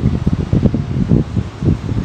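Wind buffeting the microphone: a loud, irregular low rumble that surges and dips.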